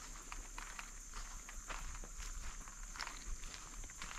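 Footsteps through woodland undergrowth at a slow, uneven pace, with short crackling strikes about once or twice a second, over a steady high-pitched drone.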